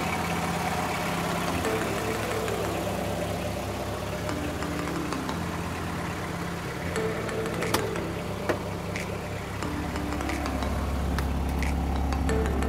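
Nissan sedan's engine idling steadily, with background music over it.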